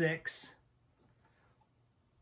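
A man's voice finishing a short phrase, then near silence: room tone.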